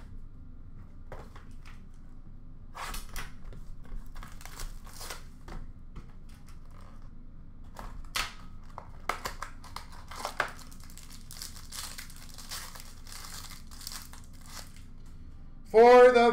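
Card packaging crinkling and tearing in irregular bursts as a pack of hockey trading cards is opened by hand.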